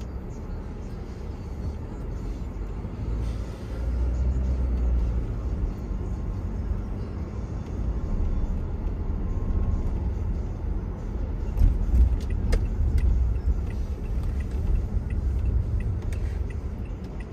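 Low, steady rumble of a car driving along a city street, engine and tyre noise swelling and easing with speed, with a few sharp clicks about two-thirds of the way through.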